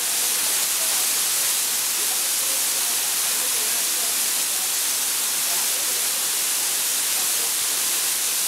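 Tiffany Falls, a tall waterfall, pouring down a rock face onto the rocks below: a steady rush of falling water, strong in the high pitches with little low rumble.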